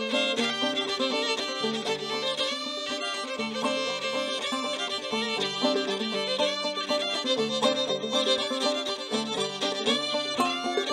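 A fiddle and a banjo playing an instrumental tune together live, the fiddle's bowed melody on top.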